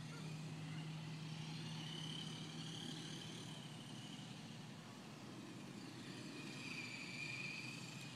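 Faint whine of Traxxas Stampede VXL RC trucks' brushless electric motors as they are driven around, the pitch wavering up and down with the throttle.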